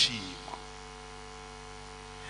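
Steady electrical mains hum, a constant low buzz with several even overtones, heard in a pause between spoken phrases; a clipped word ending sounds right at the start.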